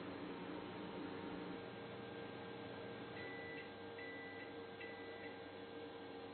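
Microwave oven sounding three short high beeps, about a second apart, to signal that its cook cycle has finished. A steady low electrical hum runs underneath.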